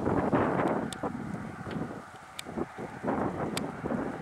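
Wind noise on the microphone, strongest in the first second and then dying down, with a couple of sharp clicks.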